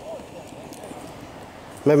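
Steady outdoor background hiss with faint, distant voices, then a man starts speaking close to the microphone near the end.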